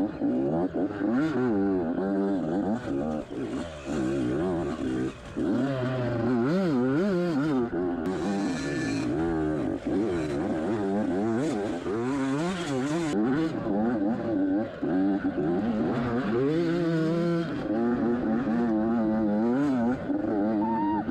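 Yamaha YZ85 two-stroke dirt bike engine being ridden hard, its revs rising and falling again and again as the throttle is worked on and off.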